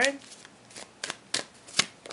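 Tarot deck being shuffled by hand: a handful of short, sharp card snaps, the loudest near the end.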